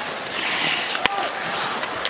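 On-ice sounds of ice hockey play: skate blades hissing on the ice, and one sharp crack of a stick on the puck about a second in.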